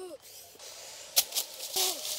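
A short voice-like call, then a few sharp snaps about a second in and a brief burst of rustling near the end. This fits twigs and dry leaves being disturbed in forest undergrowth.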